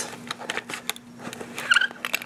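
Clear plastic blister tray crackling and clicking as a die-cast toy car is pulled out of it by hand, with a short squeak near the end.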